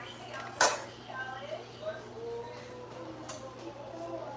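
A utensil clinking against a cooking pot and bowl while skimming foam off simmering broth: one sharp clink about half a second in and a lighter one near the end, over a faint steady hum.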